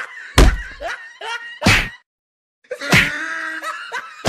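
Three heavy punch hits, about half a second, one and three quarter seconds and three seconds in, with voices crying out between them. The sound cuts out completely for about half a second just after the second hit.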